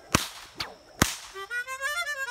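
Two sharp bullwhip cracks about a second apart, followed near the end by harmonica notes starting up again.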